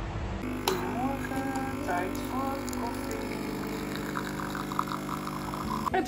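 Background music starting about half a second in, with steady held tones under short pitched melodic phrases.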